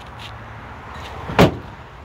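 Pickup truck tailgate slammed shut once, a single sharp metallic bang about a second and a half in.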